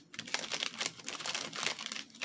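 Clear plastic bags crinkling and rustling as they are handled, in irregular crackles.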